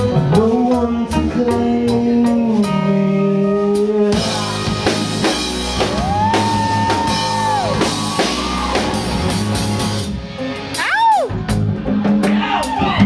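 Live rock band playing an instrumental break on a Gretsch drum kit, bass and guitars. Held chords give way about four seconds in to a lead line of bending notes.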